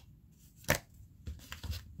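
Oracle cards being handled as a card is drawn: one sharp click about a third of the way in, then a few fainter clicks.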